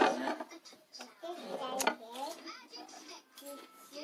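Indistinct background voices with no clear words, and a single sharp click a little before the middle.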